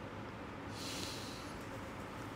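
A single audible breath from a young woman close to the microphone, lasting a little under a second, over faint room noise.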